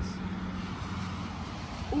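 A car passing on a road at some distance, a steady low engine hum with tyre hiss that swells and eases.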